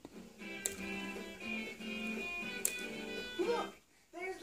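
Background music from a children's TV programme: a tune of held notes with plucked strings, and a brief voice near the end.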